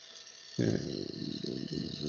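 Electric arrow crester (SpinRite) running, a steady high-pitched whir from the motor spinning the arrow shaft, under a man's drawn-out spoken 'okay' from about half a second in.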